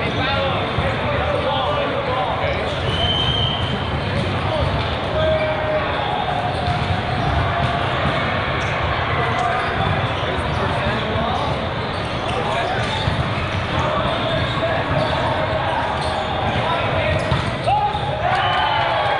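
Echoing din of a large indoor volleyball hall: many voices talking at once, with volleyballs being struck and bouncing on the hard courts. A short high whistle sounds about three seconds in.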